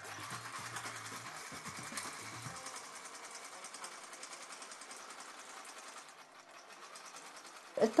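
Electric sewing machine stitching steadily, a fast, even run of needle strokes that grows fainter after about six seconds.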